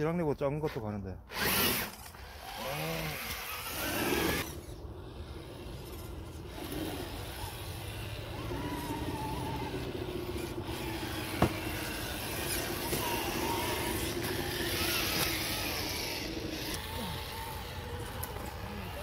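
Electric motor and geartrain of a YK4106 Rubicon 1/10 RC rock crawler whining as it crawls over rocks and tree roots, the pitch wavering with throttle and load, with one sharp tap about eleven seconds in. Voices or laughter sound in the first few seconds.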